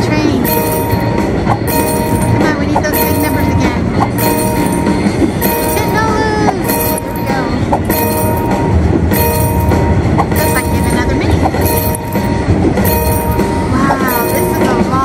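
Sound effects of a 100 Car Train slot machine bonus round: a continuous train sound with a regular beat about once a second, under steady chiming tones as the credit total counts up. Short gliding tones sound about six seconds in and again near the end.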